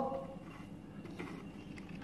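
Quiet indoor room tone with a faint, steady low hum between spoken lines.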